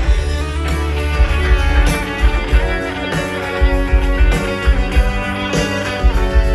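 Live rock band playing an instrumental passage with no vocals: electric guitars and bass over a steady drum beat.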